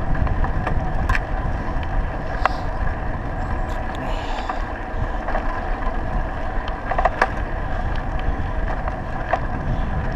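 Bicycle riding along an asphalt road, heard from a camera mounted on the bike: steady rumble of wind and road noise, with scattered clicks and rattles from the bike going over bumps.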